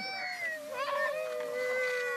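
A woman wailing in grief: one long, drawn-out cry that slowly falls in pitch, with other voices faintly under it.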